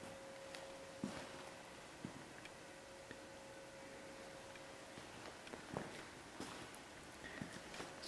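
Quiet room tone with a faint steady hum that stops about five seconds in, and a few soft footsteps.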